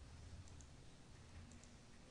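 Two faint computer mouse clicks about a second apart, over near-silent room tone, as options are picked and the archive dialog is confirmed.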